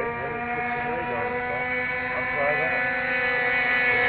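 Radio-controlled model airplane engine running at a steady high pitch, growing a little louder toward the end.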